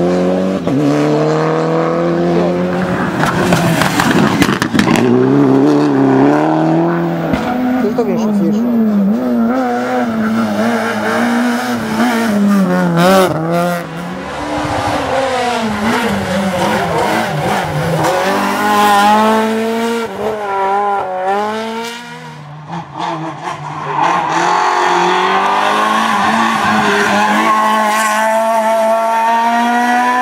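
Rally cars at speed on a tarmac stage, one after another, their engines revving hard with the pitch climbing and dropping through gear changes and on and off the throttle. The sound drops briefly about two-thirds of the way through, then picks up again with the next car.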